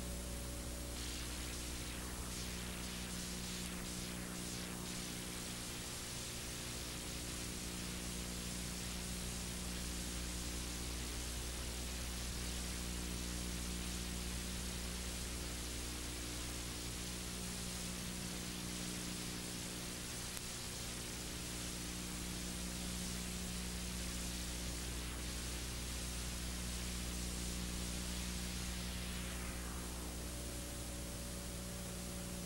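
Steady hiss with a low electrical hum made of several steady tones: the empty audio line of a broadcast recording, with no voice on it.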